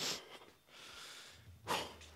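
Two sharp, breathy exhalations, one at the start and a louder one near the end, with faint breathing between: a performer out of breath from stage wrestling.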